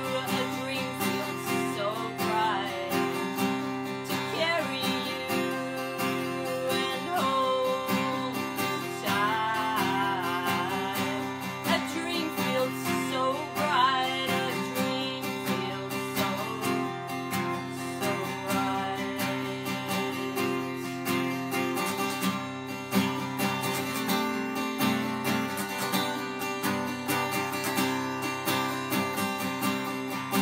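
A woman singing while strumming an acoustic guitar, a steady strummed accompaniment under her voice.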